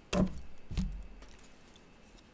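A tarot deck being shuffled by hand: two sharp card clatters in the first second, then fading rustle and light clicking.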